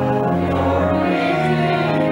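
Hymn music: voices singing held chords over sustained, organ-like tones, the chord changing every second or so.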